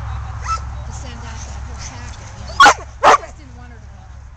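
A dog barks twice, loud and sharp, about half a second apart near the end, barking at the helper during Schutzhund protection training.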